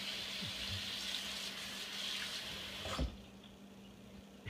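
Water running from a Moen single-handle kitchen faucet into the sink basin, then shut off with a brief knock about three seconds in.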